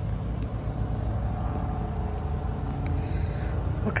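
A steady low rumble of running engines, with a faint hum above it.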